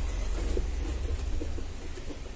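A few faint plastic knocks and rubs as the door of a small plastic mini fridge is pulled open and a hand reaches inside, over a steady low rumble.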